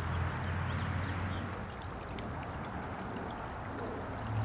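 Shallow creek water running and trickling steadily over mud and leaf litter.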